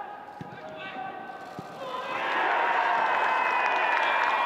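Football match sound: players shouting and a couple of sharp ball kicks. About two seconds in, a loud cheer rises and holds as the goal is scored.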